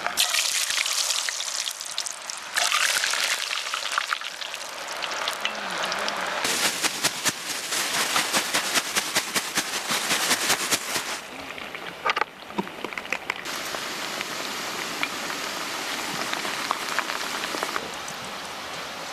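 Hot oil in a cast-iron camp oven sizzling and crackling as potato chips deep-fry. It is a dense, steady hiss full of fine crackles that changes abruptly a few times.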